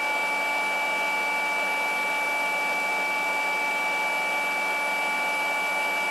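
Two rotary polishers, a Hercules 20V brushless cordless and a Flex, running continuously side by side with no load. Their motors make a steady whine with a high, piercing tone held at one pitch.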